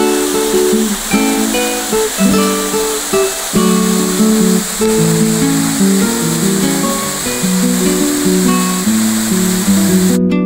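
Plucked acoustic guitar music over the steady rush of a waterfall pouring into a pool. The water noise starts and stops abruptly with the window, while the guitar plays on.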